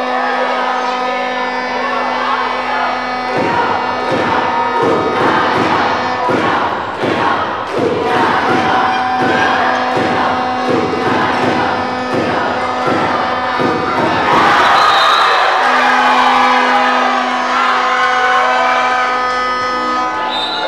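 Spectators cheering in a sports hall over music with steady held tones. Through the middle, sharp beats come in an even rhythm, about one and a half a second, like rhythmic clapping. A louder swell of cheering follows near the three-quarter mark.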